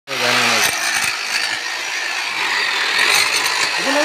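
Corded electric demolition hammer running, its chisel bit hammering steadily into hard, gravelly soil beside a concrete wall, with a few sharper knocks as the bit strikes stones.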